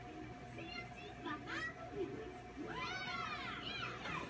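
High-pitched vocal calls that rise and fall in pitch, with a short pair about a second in and one long call about three seconds in, over a steady background hum.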